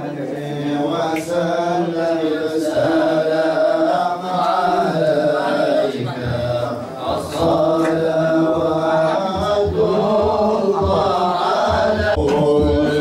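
Islamic devotional chanting of sholawat, praise of the Prophet, sung as one continuous melody in long, wavering held notes with only brief pauses for breath.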